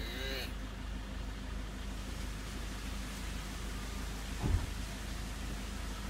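A hill myna gives one short arching call right at the start, over a steady low hum. A single dull thump comes about four and a half seconds in.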